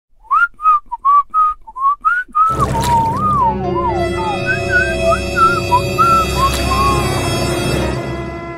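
A person whistling a tune: first a run of short, separate notes, then from about two and a half seconds in the whistled melody carries on over background music with steady held chords.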